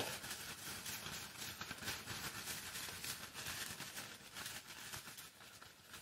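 Faint, irregular crinkling and rustling of a thin plastic zip-top bag as the paper slips inside are pushed around, dying down near the end.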